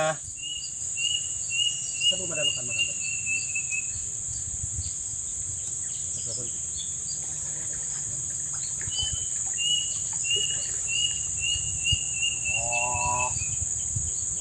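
Outdoor wetland ambience: a steady high insect drone, with a bird calling a long run of short, quick notes that fall slightly in pitch, once at the start and again about nine seconds in.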